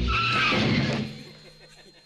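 A sudden thump followed by a loud screech, a high tone with a slightly falling pitch, that holds for about a second and then dies away.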